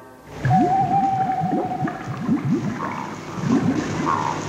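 Animated swamp sound effect: a run of bubbling bloops, each rising in pitch, about two a second, with a held wavering eerie note over the first half.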